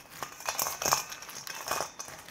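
Hands tossing raw cut blue crab pieces in a stainless steel bowl to work in a dry salt-and-pepper seasoning: shells and legs clicking and crackling against each other in an irregular run of small clicks.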